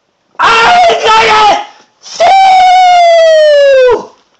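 A person's voice screaming without words: a short two-part cry, then a long, high, held scream that falls slightly in pitch and cuts off suddenly near the end.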